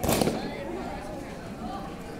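A short, loud shout at the very start, a kiai from a three-member karate team as they drop to the mat during their kata. Crowd chatter continues underneath.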